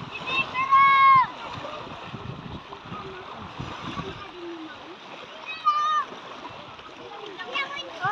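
Shallow seawater splashing as people wade and throw water with their hands. A loud, high-pitched shout comes about a second in, and a shorter call comes near six seconds.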